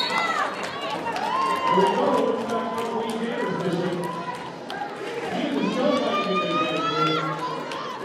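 Several voices shouting and calling out at once, with scattered clicks from roller skates on the floor.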